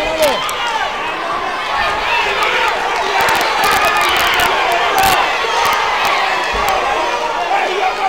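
Crowd of boxing spectators shouting, many voices calling out over one another, with a few sharp knocks from the ring, the clearest about five seconds in.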